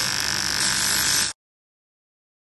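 Welding arc on an aluminium alloy wheel: a steady buzzing hiss as a crack on the inside of the rim is welded up. It cuts off suddenly just over a second in.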